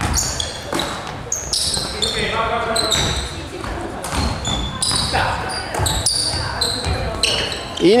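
Basketball shoes squeaking on a hardwood gym floor, many short high squeaks scattered throughout, with a basketball bouncing and players' voices in a large gymnasium.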